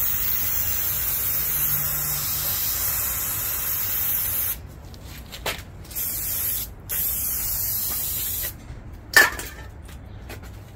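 Aerosol can of starting fluid spraying into the gap between a tire's bead and its rim: one long hiss of about four and a half seconds, then several shorter bursts. A single short, sharp sound follows near the end.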